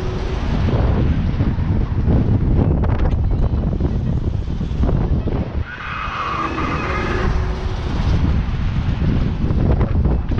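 Wind rushing over a camera microphone carried on a spinning tower swing ride: a loud, gusty rush. A brief high-pitched tone sounds about six seconds in.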